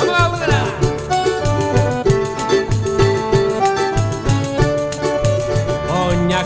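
Live band playing an instrumental passage with a steady dance beat: accordion, cavaquinho, electric keyboard and drums with percussion, Portuguese song set to a Brazilian rhythm. A quick falling run of notes comes near the start.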